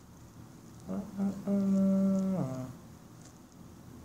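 A person humming a tune from memory: a couple of short notes about a second in, then one long held low note that slides down at the end.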